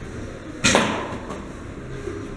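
An arrow striking with one sharp impact a little over half a second in, dying away over about half a second.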